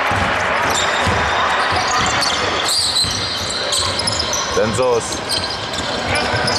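Basketball being dribbled on a hardwood court: repeated low thuds of the ball bouncing as play moves upcourt, with a brief shout about five seconds in.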